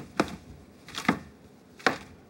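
Footsteps of hard-soled shoes on a hard floor: three firm steps, a little under a second apart.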